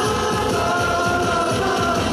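Live pop-rock concert music: a band playing with male voices singing into microphones, holding long notes over a steady beat.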